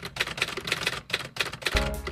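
Typing sound effect: a quick, uneven run of sharp typewriter-style key clicks as the words are typed out on screen. Music comes in near the end.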